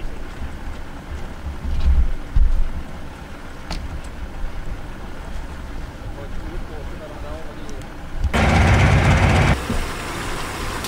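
Wind rumbling on the microphone on open water, with a couple of dull knocks about two seconds in and a loud rushing burst of noise a little after eight seconds that lasts about a second.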